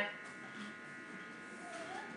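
A pause in a man's speech, filled by a faint steady electrical buzz from the microphone and amplification with low room tone; a brief faint voice sound comes near the end.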